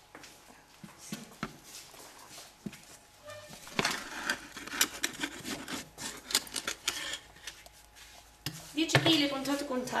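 Long wooden bread peel knocking and scraping against the brick floor of a wood-fired oven as loaves are slid in, with a few scattered knocks at first and a busy run of clatter and scraping in the middle.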